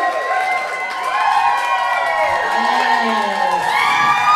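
Live audience cheering and shouting, many voices overlapping, with no music playing.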